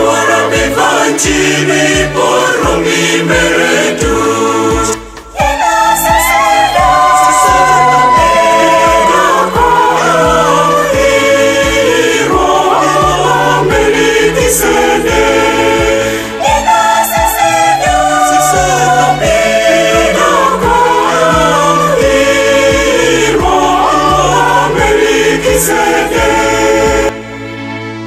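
A church choir singing a Catholic hymn in several voices over a steady bass line, with a short break about five seconds in. About a second before the end the singing cuts off and quieter music takes over.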